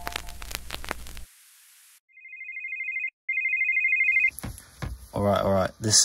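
An electronic telephone ringing: two trilling rings of about a second each, a short gap between them, the first growing louder. A man starts talking just after the second ring.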